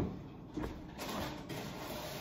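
Faint rummaging at an open refrigerator, with low rustling and a few light knocks.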